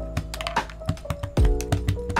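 Typing on a Rakk Pirah mechanical keyboard with lubed Akko Jelly Black linear switches, foam and tape mods and XDA keycaps: a quick run of keystrokes. Background music with a heavy beat plays over it, its kick drum the loudest thing, about a second and a half in.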